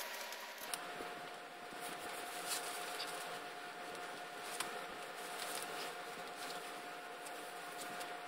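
Rustling and handling of costume fabric and padding, with scattered small clicks and scrapes, over a faint steady whine that begins under a second in.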